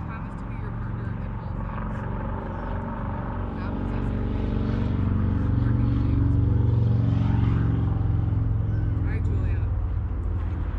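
A steady low engine drone, most likely a passing vehicle or aircraft, swells to its loudest about six to seven seconds in and then eases off slightly, under faint voices.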